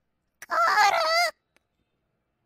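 The cartoon parrot's squawky, high-pitched, bird-like voice calling the Sanskrit question “Ko'ruk?” (“who is free of disease?”) once, about a second long, starting about half a second in.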